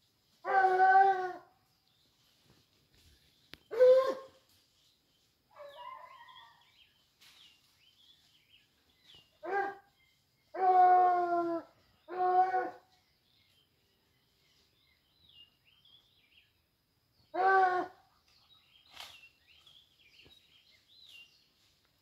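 Hunting dogs baying while working after a wild boar: about seven drawn-out bays at irregular intervals, with faint bird chirps between them.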